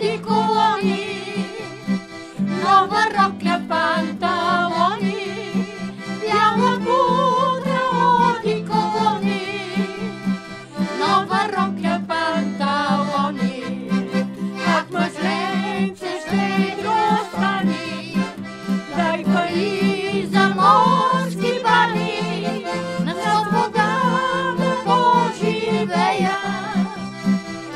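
Instrumental Balkan folk dance tune (horo), an accordion carrying an ornamented melody over a steady low accompaniment.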